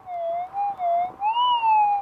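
Metal detector's target tone as the coil is swept over a buried target: one unbroken warbling tone that rises and falls in pitch with the sweeps, peaking about a second and a half in.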